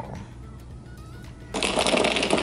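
Ice in a glass mason jar rattled by a straw stirring a drink: a sudden, loud, rapid clatter of ice knocking against the glass, starting about one and a half seconds in.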